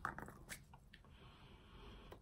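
Faint clicks of a small candle container being handled in the first half second, then a quiet, drawn-out sniff as the candle is smelled.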